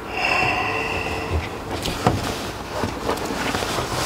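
Steady rumbling hiss of a car sound effect, with a faint whine in the first second and a few light knocks.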